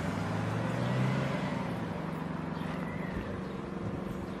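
Outdoor street noise with a low engine hum that fades out about a second in, leaving a steady background hiss.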